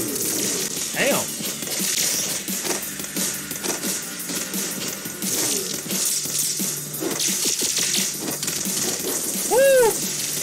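Fight-animation soundtrack: music under a rapid run of clashing, shattering hit effects, with a loud pitched cry that rises and falls near the end.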